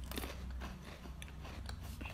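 Faint crunching and chewing of thin Pocky-style biscuit sticks, heard as scattered small crisp clicks as they are bitten.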